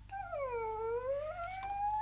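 A woman's voice imitating a door creaking slowly open: one long, drawn-out squeak that dips in pitch and then slowly rises.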